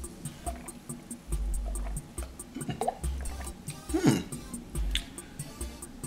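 Background music with a steady ticking beat under a person drinking cola from a glass: faint sips and swallows, then a short murmured "hmm" about four seconds in.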